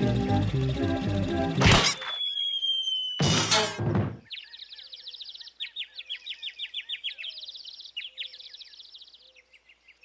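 Cartoon sound effects: chase music cuts off, then a slowly falling whistle and a loud crash thump as the characters hit the ground. After that comes a long run of fast, high, bird-like tweeting, the 'seeing stars' dizziness effect, fading toward the end.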